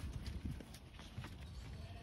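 Faint, scattered knocks of sheep hooves shuffling on packed dirt, over a low rumble.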